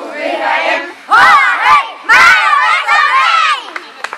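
A group of children shouting their camp unit's chant in unison, with two loud shouted bursts about one and two seconds in, then tailing off near the end.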